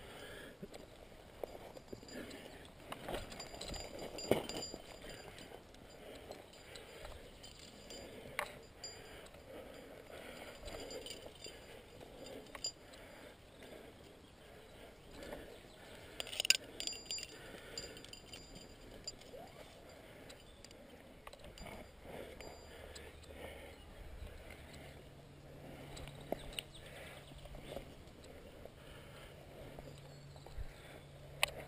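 Faint, scattered clinks of carabiners and quickdraws knocking together on a climbing harness rack, with light rustles and scrapes of movement; the sharpest clink comes about halfway through.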